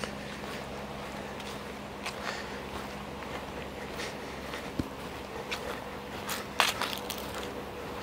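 Footsteps on a dry grass and dirt trail, irregular crunching steps over a steady low hum, with one louder crunch about two-thirds of the way through.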